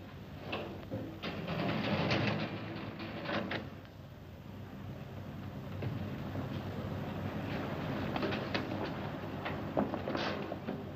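A car engine running with a low, uneven rumble, with a few sharp knocks in the first few seconds.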